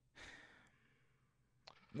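A man's short breath out, about half a second long, then near silence with a faint mouth click just before speech begins at the end.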